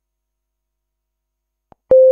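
Dead silence, then near the end a faint click and an electronic beep: a single steady pure tone that starts abruptly and holds.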